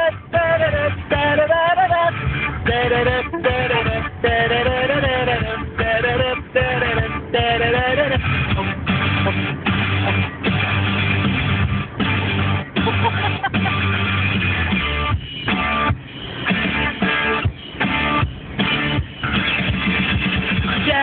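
Loud rock music with no lyrics sung: the instrumental break of the song. A wavering lead melody carries the first eight seconds, then strummed guitar chords and a steady beat take over.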